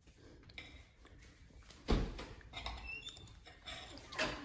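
Metal spatula scraping and tapping on a plate while lifting a small cake square, with light clicks, faint squeaks and one louder knock about two seconds in.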